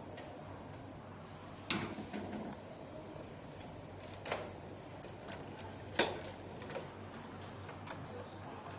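Plastic parts of a Samsung mini-split indoor unit clicking and knocking as the control box cover is handled and fitted back on: a few sharp clicks, the loudest about six seconds in.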